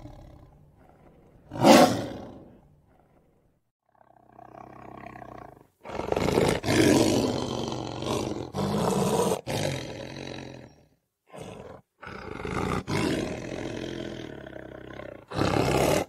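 A lion roaring again and again in separate roars that are spliced together and stop abruptly. There is a sharp loud roar about two seconds in, a brief silence, and then a long loud stretch of back-to-back roars.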